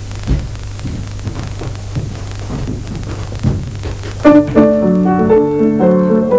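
Room noise with a low steady hum and small knocks, then about four seconds in an upright piano starts playing, the opening of a song's accompaniment.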